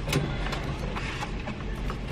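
Car engine idling with a low steady hum, under irregular rustling and clicking as things are handled inside the car.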